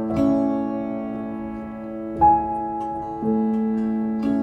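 Music: slow, sustained piano notes ringing over a low held tone, with new notes struck near the start, about two seconds in and about three seconds in.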